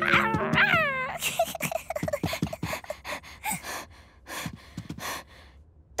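A cartoon toddler's voice growling and roaring like a dinosaur in a string of short, rough bursts, playing a dinosaur in dinosaur slippers. A held music chord sounds under the first second.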